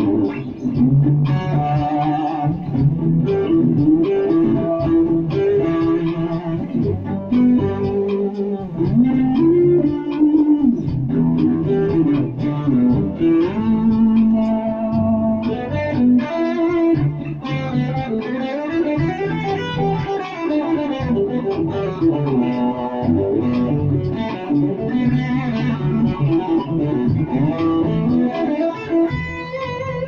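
Ibanez SZ320 electric guitar played through a Roland Micro Cube amp: lead lines of quick single-note runs, with some held notes and a few bent or sliding notes.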